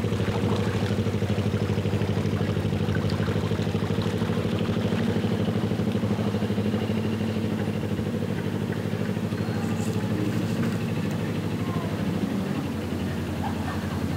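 A small narrowboat diesel engine running steadily at low revs with an even, fast chug while the boat turns in the river, easing slightly near the end.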